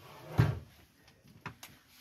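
A brief knock or rustle of handling noise about half a second in, followed by a couple of faint clicks.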